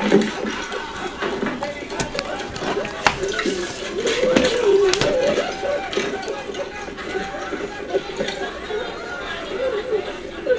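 Indistinct voices in the background, with a few sharp clicks about two, three and five seconds in.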